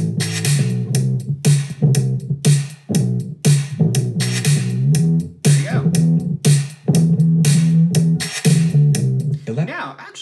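A drum loop and a bass-guitar loop playing together at 120 BPM, a steady beat of about two hits a second under a repeating bass line. The bass loop is being time-stretched by Logic's Flex/Smart Tempo to follow the drums, and its timing is still a little loose.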